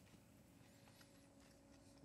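Near silence: room tone with a faint steady hum and a few faint, soft clicks.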